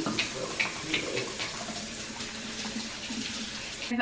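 Kitchen faucet running into a stainless steel sink as hands are washed under the stream, a steady rush of water that stops abruptly just before the end.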